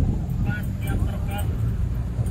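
Wind buffeting the microphone in a loud, uneven low rumble, with faint distant voices from the crowd.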